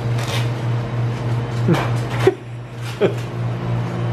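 A steady low hum, typical of kitchen machinery, with a few short clicks and two brief voice sounds, one near the middle and one about three seconds in.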